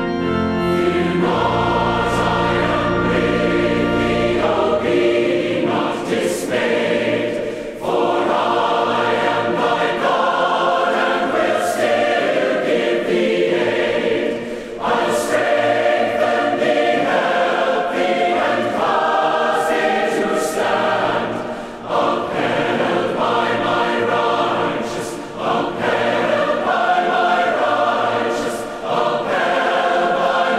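A choir singing a hymn in slow phrases with short breaks between them, with low organ notes held underneath in the first few seconds.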